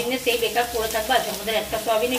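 Flat steel spatula stirring and scraping sliced onions frying in oil in an aluminium kadai, with the oil sizzling; a voice runs underneath.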